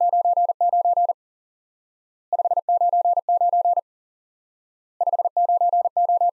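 Morse code '599' sent three times at 40 words per minute as a steady single-pitch tone, keyed on and off. Each group of quick short and long beeps lasts about a second and a half, with about a second of silence between groups.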